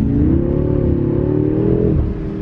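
BMW M5 Competition's twin-turbo V8 accelerating hard, heard from inside the cabin. Its pitch climbs steadily, then falls abruptly near the end as the gearbox shifts up.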